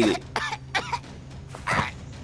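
A voice giving three short, harsh, cough-like bursts.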